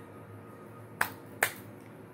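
Two sharp clicks about half a second apart, about a second in, over quiet room tone.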